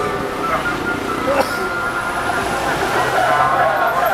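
Street traffic running, with a voice carried over a campaign van's roof loudspeakers that grows louder near the end.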